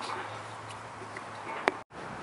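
Faint steady background noise with one sharp click near the end, then a brief dropout at an edit cut.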